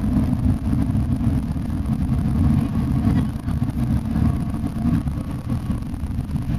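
Steady low rumble of a long-distance coach running at highway speed: engine and tyre noise as heard inside the passenger cabin.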